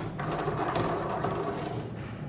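Steel-on-steel rasping and rattling as the stainless-steel bomb of a bomb calorimeter is gripped by its capped head and worked by hand, fading out near the end.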